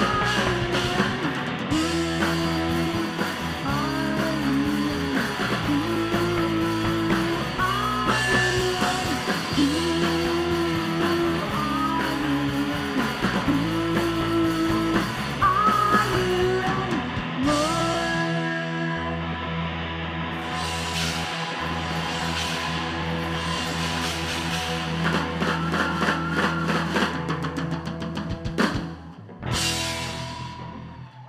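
Live rock band: a woman singing over electric guitar, bass guitar and drum kit. The singing stops about halfway through and the band holds a heavy sustained section with busy cymbals, closing with a final loud hit that rings out at the very end.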